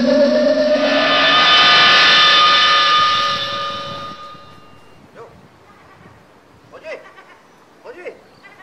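A motorhome's engine pulls away and drives past, its note rising steadily as it speeds up, then fades out about four seconds in.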